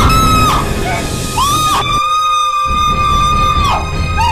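A woman screaming over dramatic background music. A scream cuts off about half a second in, then a second long, high, steady scream starts about a second and a half in and falls away near the end.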